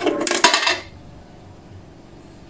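A coin dropping through the coin slot of a sheet-metal car wash vending timer box, a quick metallic rattle lasting under a second. The coin is accepted and switches on the timer and the test lamp.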